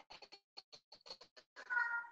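Faint, quick, irregular clicking, then a short high-pitched cry near the end.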